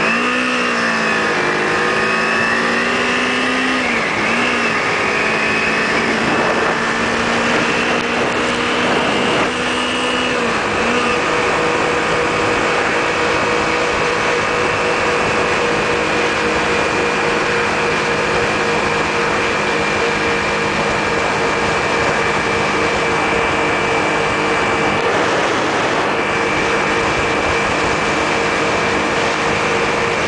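Kawasaki Ninja 250 parallel-twin engine running while riding. Its note dips and climbs over the first ten seconds or so, then holds steady at cruising speed, under constant wind and road rush at a helmet microphone.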